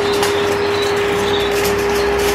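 Induction cooktop running, its cooling fan giving a steady noise with a constant hum. There is light crinkling of aluminium foil as fingers press it closed over the cake tin.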